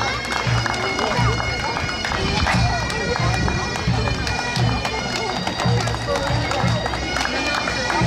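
Scottish bagpipes playing a tune over their steady drones, with a drum beating roughly twice a second underneath.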